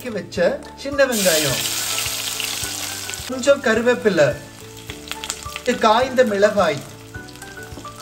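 Sliced shallots dropped into hot oil with mustard seeds and cumin in a clay pot: a loud sizzle bursts out about a second in and fades over the next two seconds into steady frying.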